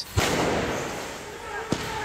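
A loud explosive bang just after the start, its noise echoing and fading over about a second, then a single sharp crack near the end, amid the noise of a street riot.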